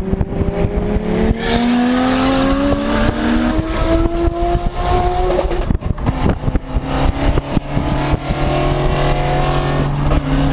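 Toyota Supra engine heard from inside a Mk3 Supra's cabin under acceleration, rising steadily in pitch; the pitch dips briefly about halfway through, then climbs again.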